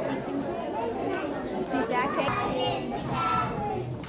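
Many young children's voices chattering at once.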